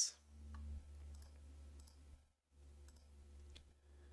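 A few faint, scattered computer mouse clicks over a steady low electrical hum; the hum cuts out for a moment a little past the middle.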